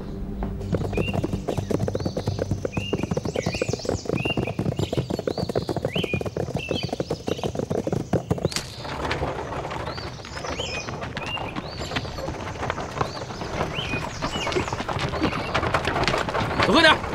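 Several horses galloping, a dense, fast run of hoofbeats that starts suddenly and eases off about halfway through, with birds chirping throughout.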